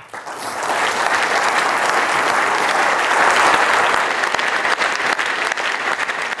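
Audience applauding: the clapping swells over the first second, then holds steady and dense.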